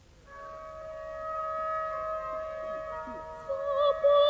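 Orchestral woodwinds enter softly a moment in, holding a quiet sustained chord that gradually swells; near the end a soprano voice with vibrato comes in on a long held note, opening a lullaby.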